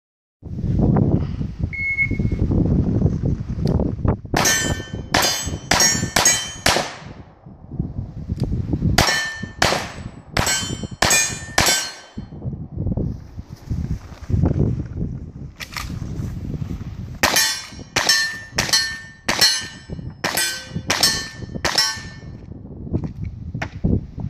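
A shot timer beeps once, about two seconds in. Then three strings of quick gunshots follow, about five, five and then about ten, each shot answered by the clang of a hit steel target. The shots come from single-action revolvers and a lever-action rifle in a cowboy action shooting stage.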